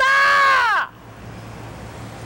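A woman's loud, high-pitched yell into someone's ear: one long cry of under a second at the start, its pitch rising and then falling, followed by quieter street background.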